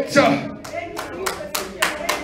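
Hands clapping in a quick, uneven run of sharp claps, about five or six a second, starting just after a shouted phrase trails off.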